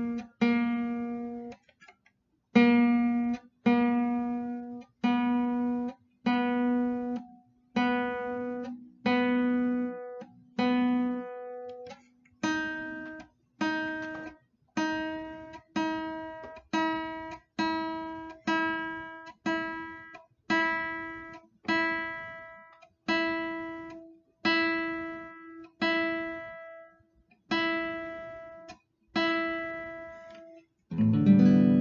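Nylon-string classical guitar being tuned: one open string plucked over and over, about once a second, each note ringing and dying away, while its tuning peg is turned. About twelve seconds in, the plucking moves to a higher string.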